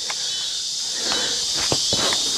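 Handling noise from a handheld camera being moved: a few light knocks and rustles about a second in and near the end, over a steady high-pitched hiss.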